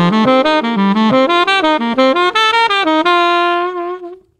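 Tenor saxophone playing a fast run of triplet arpeggios that criss-cross F major and E-flat major triads, climbing steadily and ending on a long held top note about three seconds in.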